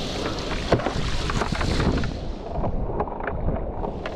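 Wind rushing over the microphone and water hissing and splashing as a hydrofoil board rides fast over wind-driven chop, with scattered irregular splashes and one sharp tap about three-quarters of a second in.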